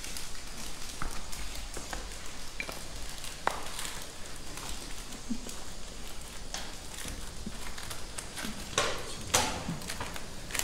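Scattered light taps and clicks, like footsteps and small objects being handled on a gritty floor, over a low steady rumble. A cluster of sharper clicks comes near the end.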